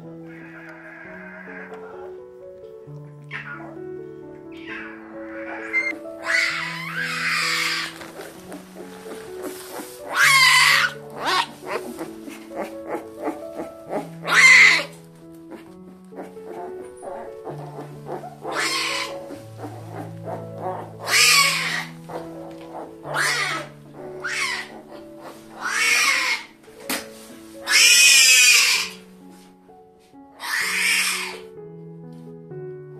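Newborn tiger cubs crying in loud, drawn-out calls, about ten of them, coming every couple of seconds from about six seconds in. Slow background music with held notes plays under them throughout.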